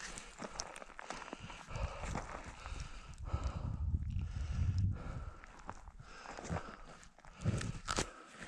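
Boots crunching and scuffing on loose rock and gravel while stepping along a steep slope, with a low rumble through the middle few seconds.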